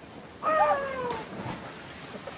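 A woman's single long cry, falling in pitch for about a second, as she leaps off a rock ledge in a cliff jump.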